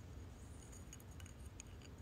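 Faint, scattered small clicks and scratchy ticks from a cat grappling with a wooden wand toy against a sisal-rope scratching post, over a low steady hum.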